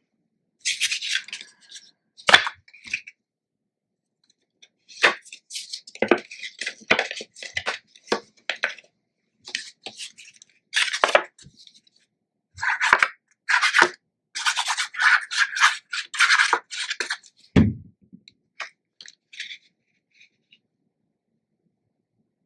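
Paper and cardstock being handled: patterned paper mats rustling and sliding in irregular bursts, with a few sharp taps and one dull thump a few seconds before the end as a mat is pressed down.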